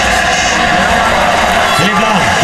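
Loud, steady crowd noise from a televised football match played over a public-viewing PA, with the constant drone of vuvuzelas underneath. The recording is muddy and distorted because the pocket camera's microphone got wet.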